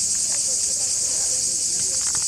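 A steady, shrill chorus of insects droning without a break, with faint distant voices underneath.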